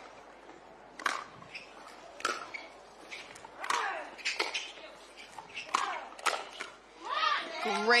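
Pickleball paddles striking the ball in a doubles rally: about six sharp pops at uneven intervals of roughly a second, over a steady hiss of wind on the court microphone.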